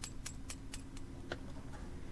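Quick light metal taps, about four a second, of a steel rod against the pin of a Jaguar E-type turn signal switch assembly, driving the pin back into place; the taps stop about a second in, with one last tap that rings briefly.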